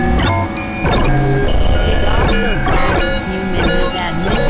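Dense experimental synthesizer music: layered held tones that change pitch in steps, with several swooping pitch glides over a constant low rumble.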